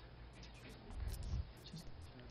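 Quiet pause in a meeting room: low room noise with one faint, muffled low sound about a second in.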